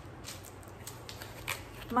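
Faint handling sounds of cardboard: a few light taps and rustles as small taped cardboard baskets are picked up and handled.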